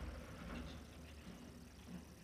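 Faint low steady hum, with faint scraping as a metal spatula begins stirring dry semolina in an aluminium pan near the end.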